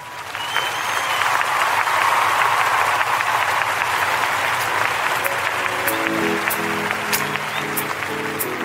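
Applause that swells in the first second and holds steady, typical of the opening of a live gospel recording. About six seconds in, the instrumental intro of the song, with sustained chords, begins under it.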